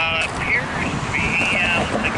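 Short stretches of indistinct speech over a steady background noise.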